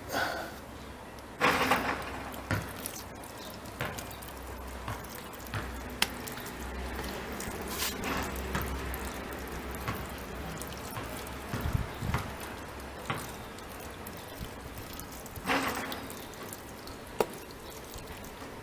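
Water poured from a plastic jug onto soil in a plastic planter box, a steady trickle soaking into freshly sown earth, with a few small clicks and drips along the way.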